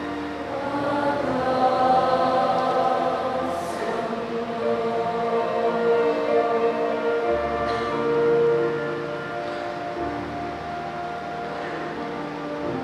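A large congregation singing together in long, held notes, led by a conductor; the singing grows quieter over the last few seconds.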